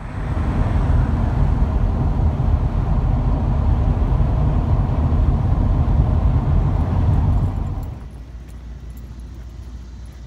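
Road and engine noise heard from inside a car cruising on a highway, a steady rumble. About eight seconds in it drops away to a much quieter low hum.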